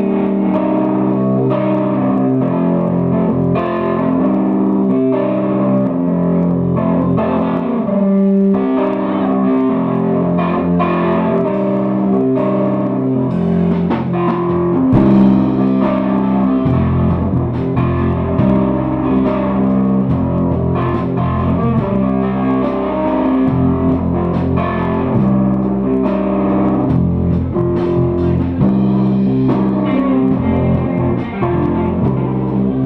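Live rock band playing an instrumental passage, electric guitar to the fore with keyboard; the low end grows fuller about halfway through.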